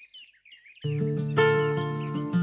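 Soft bird chirps, then a little under a second in, instrumental soundtrack music comes in with plucked string notes over sustained tones.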